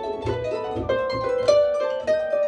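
Concert pedal harp played solo: a quick succession of plucked notes ringing over one another, with a stronger accented pluck about one and a half seconds in.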